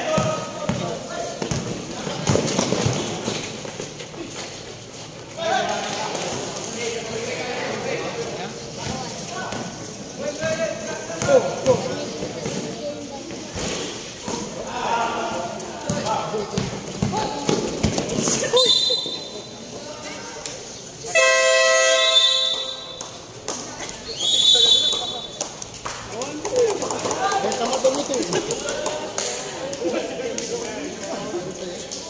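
Spectators at a basketball game chattering and shouting, with a ball bouncing on the concrete court. About two-thirds of the way through come two short, shrill referee's whistle blasts, with a loud horn blast of over a second between them.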